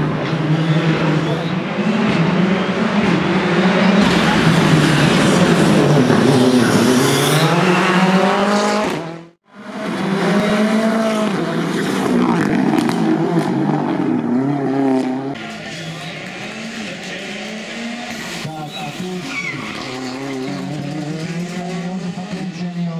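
Ford Fiesta R5 rally car's turbocharged four-cylinder engine revving hard, its pitch climbing and falling again and again as it shifts through the gears. The sound drops out abruptly about nine seconds in, then resumes and is quieter over the last several seconds.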